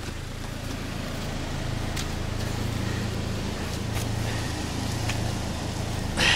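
A car engine running steadily, growing louder over the first couple of seconds and then holding even, with a few faint clicks over it.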